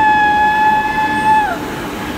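A woman's long, high-pitched scream on a moving amusement ride. It is held level on one pitch, then slides down and stops about three-quarters of the way through, over a steady background din.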